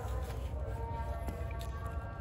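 Faint background music of held notes over a steady low rumble, with a few light clicks of cardboard boxes being handled.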